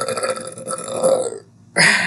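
A woman's long, loud burp at a steady pitch, which ends about one and a half seconds in. She likens it to a movie dinosaur's voice.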